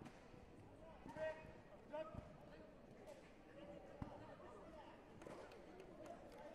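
Quiet sports-hall ambience: a voice calls out twice, about one and two seconds in, and a couple of dull thumps of feet landing on the foam competition mat follow.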